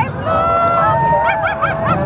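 Horns in a parade sounding several long held notes together, followed near the end by a quick run of short, higher notes, over steady crowd noise.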